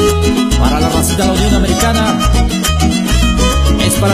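Upbeat Mexican regional dance music with no singing: a violin line over a steady bass beat.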